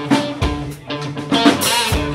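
Live rock band playing: drum kit strikes over sustained electric guitar, loud.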